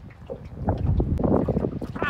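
Wind buffeting the microphone out on open water: an irregular low rumble that swells and fades in gusts.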